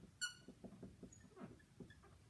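Dry-erase marker squeaking faintly on a whiteboard as a number is written, a quick run of short squeaks, one per pen stroke, with a sharper one just after the start.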